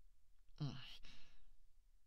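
A low-pitched voice giving one short, breathy 'un' (a murmured 'mm') about half a second in.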